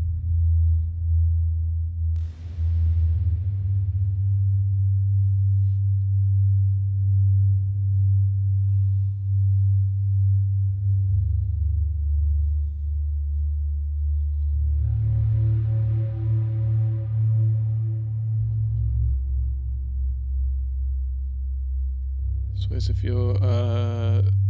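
Ambient electronic track playing back from Ableton Live, led by a deep sub-bass line built from the lowest notes of the chord progression, stepping to a new note about every four seconds. Soft sustained synth pads sit above it, and a hiss swells up about two seconds in.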